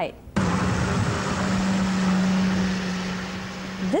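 Diesel engine of a Caterpillar wheel loader running steadily on sand: a low drone over a hiss of noise, starting suddenly about half a second in.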